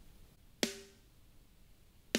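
A single drum hit from a sampled kick, snare and hi-hat kit, heard only through a heavily compressed parallel drum bus, with a short ringing tone after it.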